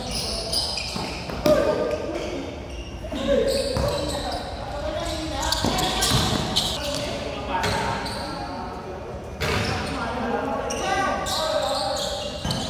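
Basketball being dribbled and bouncing on a hard court in a pickup game, repeated sharp thuds, with players' voices calling out over it.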